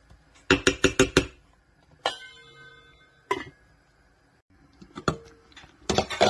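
Kitchen clatter on a stainless steel pot: a quick run of about six sharp taps, then a lid or utensil knocks against the metal about two seconds in and rings briefly. A couple of lighter single clinks follow.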